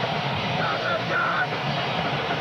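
Punk band playing live: electric guitars, bass guitar and drums in a dense, steady wall of sound.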